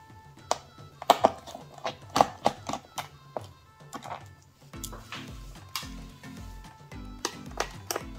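Sharp, irregular clicks and ticks of a small screwdriver working a stubborn screw in a laptop's metal bottom panel, over background music with a stepping bass line that grows stronger about halfway through.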